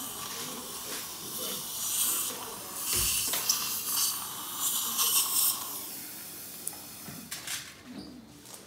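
Dental suction (saliva ejector) running in a patient's open mouth: an uneven hiss with slurping surges, which stops about six seconds in.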